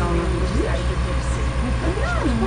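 Diesel engine of an Atlas excavator running with a steady low throb.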